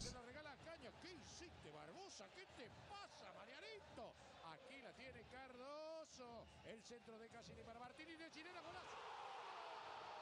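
Faint speech throughout, heard quietly behind the reaction: commentary from the football match clip playing in the background.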